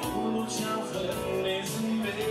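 A live party band playing a slow dance number: held instrument notes over a steady beat with regular cymbal strikes, and no vocal line.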